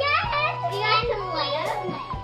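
Children's voices over background music with a steady bass line.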